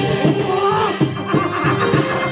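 Live Taiwanese opera band accompaniment: sustained melody notes over regular plucked and struck beats, with a wavering, sliding high note about half a second in.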